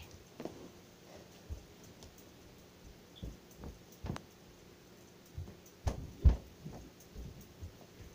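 Scattered faint thumps and knocks over a quiet room, irregular and a second or so apart, with the loudest pair about six seconds in.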